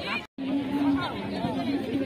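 Indistinct chatter of several voices from spectators and players at an outdoor football match, broken by a short moment of silence about a quarter second in.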